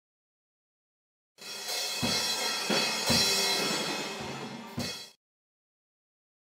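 Acoustic drum kit played hard: washing crash cymbals over about five heavy kick and tom hits, starting about a second and a half in and cutting off suddenly about four seconds later.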